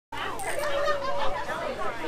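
People talking, voices that the speech recogniser did not make out as words.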